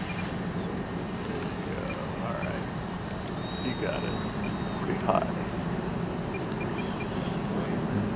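Twin electric ducted fans of a Freewing F-22 RC jet on 8S power in flight, a steady rushing whine carried over wind noise, with faint voices in the background.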